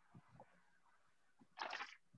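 Near silence: faint room tone through a call's microphone, with a few tiny low clicks and a short soft hiss near the end.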